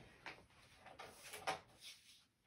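Faint handling sounds of paper being trimmed: a few soft knocks, then a brief scraping sweep near the end.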